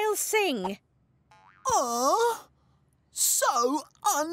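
A cartoon character's voice making three wordless, swooping vocal sounds, each dipping and then rising in pitch, about a second apart.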